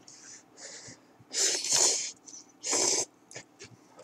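A person slurping spicy curry ramen noodles, sucking them in with a rush of air: two short soft slurps, then two long loud ones about a second and a half and three seconds in.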